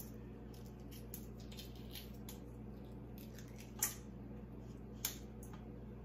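Faint crackling and small clicks of cracked shell being peeled off a hard-boiled egg by hand, with two sharper clicks about four and five seconds in, over a steady low hum.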